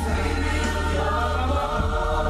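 A group of voices singing a gospel song, with a steady low hum underneath.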